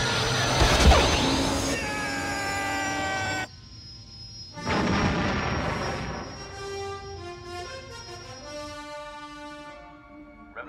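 Space-battle film soundtrack: a blast about a second in, a falling starfighter whine, a rushing fly-by swell around the middle, then orchestral score with held notes in the second half.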